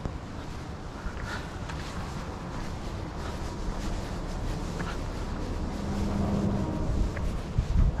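Wind buffeting the camera microphone: a steady low rumble that grows stronger, with heavier gusts near the end.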